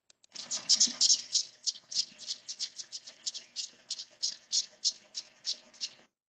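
Recorded song of the 17-year periodical cicada Magicicada septendecula, played back through a computer speaker over a video call: a train of high, buzzy ticks, quick at first and then about three a second. It sounds like a katydid.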